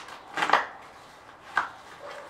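Cardboard shipping box being handled on a glass-topped metal table: a quick cluster of short knocks about half a second in, then one more knock near the end.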